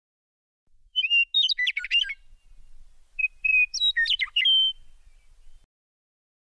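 Bird chirping: two short phrases, each a few whistled notes followed by a quick run of chirps, about two seconds apart.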